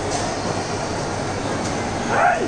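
Steady background hubbub of a busy shopping mall, an even wash of noise with no single sound standing out.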